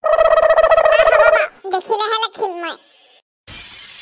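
A cartoon character's voice holding one loud, long cry for about a second and a half, followed by a few spoken words. Near the end a hiss-like noise starts.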